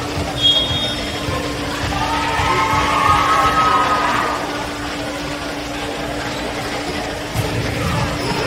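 Indoor gym ambience during a volleyball rally: a steady low hum, a brief high whistle about half a second in, then voices over background music.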